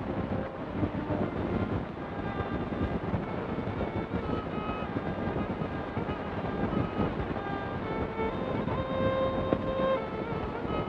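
Background film score: a sparse melody of short held notes over a loud, crackling hiss.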